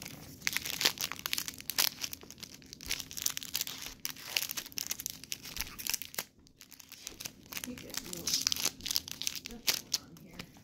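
Foil booster-pack wrapper crinkling and tearing as it is ripped open by hand, a dense run of crackles with a short lull a little past the middle.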